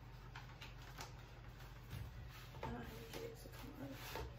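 Faint handling of a plastic high chair tray: a few soft clicks and knocks spaced about a second apart as the tray and its green insert are tugged to get them apart.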